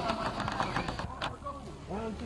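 Faint, distant shouts and chatter of footballers calling to each other across the pitch, over a steady low background rumble.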